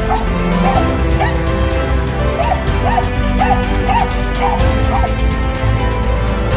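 Croatian sheepdog barking repeatedly while herding sheep, about two short barks a second, over background music.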